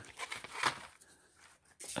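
Cardboard-and-plastic blister packs being handled and shuffled: a few short crinkling rustles, mostly in the first second, then quieter.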